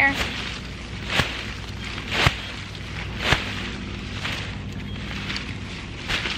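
A hibiscus plant's root ball being shaken and knocked about to loosen the old soil from its roots: rustling of leaves and crumbling soil with three dull thumps about a second apart.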